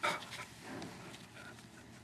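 Small dog making brief noises: a sharp huff at the start, then a faint, low whimper under a second in.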